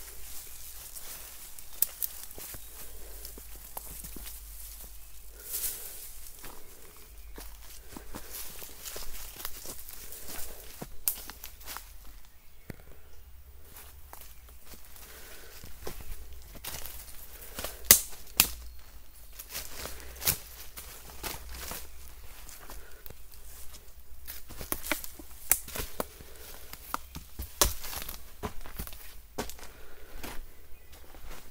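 Footsteps of a person walking a forest trail over leaf litter, twigs and gravel, an uneven run of scuffs and sharp snaps, the loudest about two-thirds of the way through.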